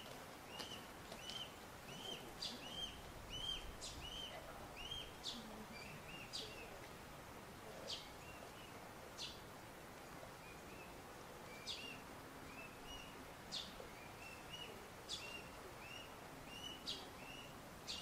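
Faint bird calls: a run of short, evenly repeated chirps, about two a second, thinning out after the first six seconds, with sharper high calls scattered over them, above a steady outdoor hush.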